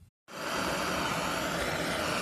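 Handheld gas blowtorch burning with a steady, even hiss of flame, starting a moment in.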